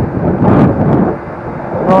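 Wind buffeting the microphone of a moving e-scooter, a loud low rumble mixed with tyre noise from the path. It eases for a moment about halfway through, then comes back.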